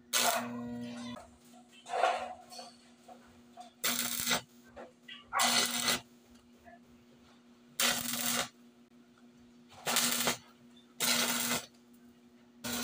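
Electric arc welding on a steel wire-mesh cage: about seven short bursts of arc crackle, each under a second, as tack welds are struck one after another, with a steady low hum between them.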